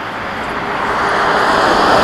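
Road traffic: a vehicle passing at speed on a dual carriageway, its tyre and engine noise swelling steadily and loudest near the end.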